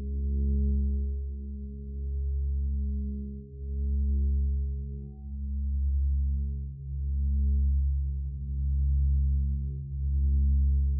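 Giant Tibetan singing bowl (13.5 in, about 3.6 kg, tuned to C#) sung by rubbing a covered mallet around its rim: a deep, sustained C# hum with steady overtones above it. The tone swells and fades in a regular spin about every one and a half to two seconds, the bowl's "spinning OM tone".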